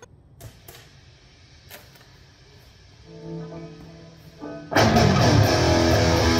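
Electric guitar played through a Marshall speaker cabinet. It starts quietly with a few clicks and a couple of single held notes, then a loud riff kicks in suddenly near the end.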